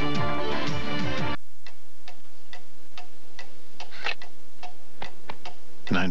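A music sting that cuts off suddenly about a second in, followed by a clock ticking steadily, about twice a second, in a quiet room.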